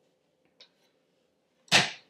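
Lid of a small hinged wooden box shutting with a single sharp knock near the end, after a faint tick; otherwise near quiet.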